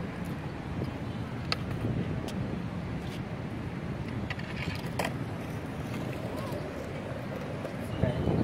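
Outdoor city-park ambience: a steady low rumble of distant traffic with faint voices, and a few sharp clicks scattered through.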